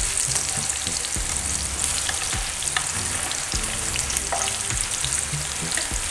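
Spiced eggplant slices shallow-frying in oil in a frying pan, a steady crackling sizzle as they crisp, with a few light clicks as metal tongs turn them.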